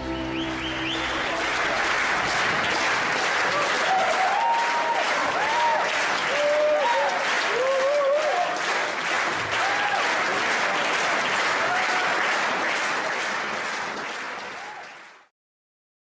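Audience applauding, with a few voices cheering and calling out in the middle; the applause fades out near the end.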